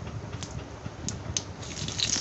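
Mustard seeds popping in hot oil in a wok, a few sharp scattered pops. Near the end curry leaves go into the oil and it breaks into a louder, steady sizzle.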